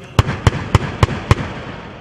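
XM813 30 mm chain-fed automatic cannon on a Bradley firing a short burst of five rounds, evenly spaced at about three and a half shots a second.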